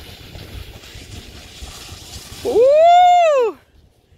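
A long, high 'whooo' of cheering voice lasting about a second, its pitch rising and then falling, coming after a low rustling noise of movement in the snow.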